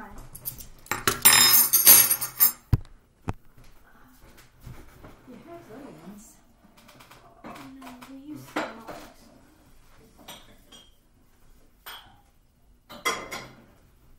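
A handful of metal spoons clattering down onto a table, loudest a second or two in, followed by a few lighter clinks of metal.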